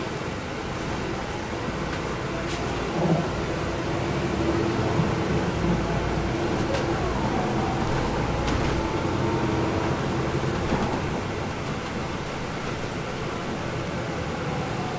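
Interior of a 2010 NABI 416.15 transit bus under way: its Cummins ISL9 inline-six diesel and road noise run steadily, with a held hum through the middle, getting a little louder a few seconds in and easing off near the end.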